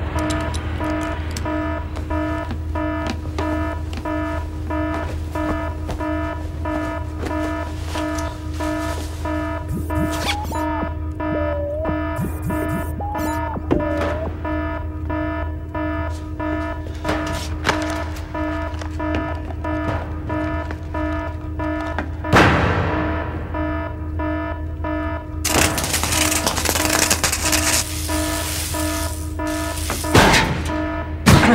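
Film soundtrack: tense background music of steady held tones over a low hum. A few small gliding tones come around the middle, a sudden swooping effect about three-quarters of the way through, and a rush of noise near the end.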